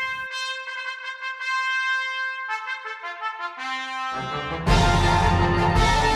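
Concert band playing a march: brass play a line of held notes high up for about four seconds, then the full band comes in much louder with heavy low brass.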